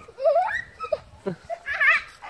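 Children laughing and squealing in short bursts, with a high, wavering shriek near the end.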